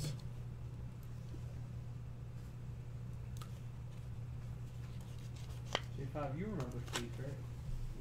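A trading card handled and slid into a plastic sleeve and rigid card holder: faint plastic and cardboard rustling with a few light clicks, one sharp click a little past the middle. A steady low hum sits under it.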